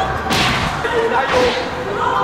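Badminton rackets swishing and striking the shuttlecock in a fast rally: two sharp swishing hits about a second apart.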